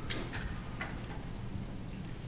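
Quiet room tone with a steady low hum, and a few light ticks and rustles in the first second from papers being handled at a table.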